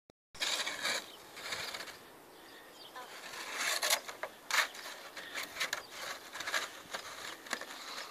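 Irregular short bursts of crunching and scraping in packed snow, a few seconds apart.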